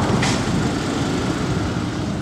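Tractor engine running steadily, giving an even low rumble, with a brief click about a quarter of a second in.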